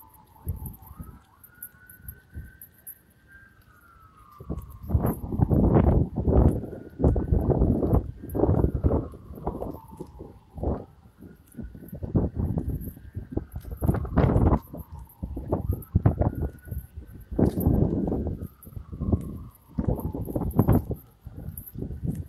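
A distant emergency vehicle siren wailing, its pitch rising and falling slowly, one sweep every four to five seconds. From about four seconds in, loud irregular buffeting on the phone's microphone comes and goes over it.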